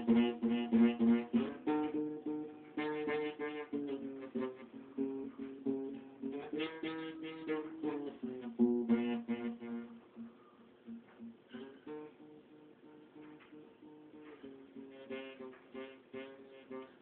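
Acoustic guitar played by hand, notes plucked one at a time in a simple melody. The notes are fuller in the first part and become softer and sparser in the last few seconds.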